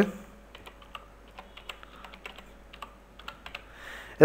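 Computer keyboard typing: an irregular run of key clicks as a word is typed.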